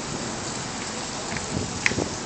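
A steady rushing hiss, like rain or running water, with one sharp click near the end.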